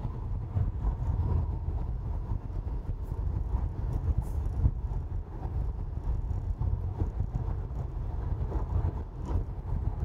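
Steady low road and tyre rumble with some wind noise, heard inside the cabin of a Tesla Model Y as it drives along a highway. There is no engine sound from the electric car.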